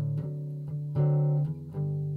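Acoustic guitar played live, chords strummed and left ringing between sung lines, with a strong strum about a second in.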